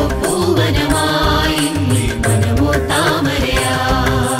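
A Malayalam Christmas carol song: a voice sings a flowing melody over a band with a bass line and a steady beat.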